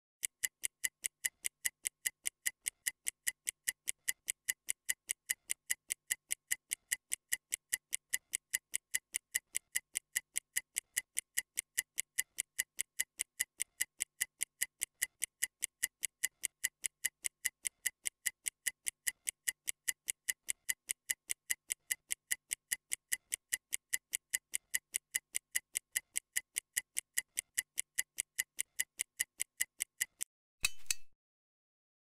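Stopwatch ticking sound effect: an even run of high, sharp ticks, about three a second, counting down a 30-second rest period.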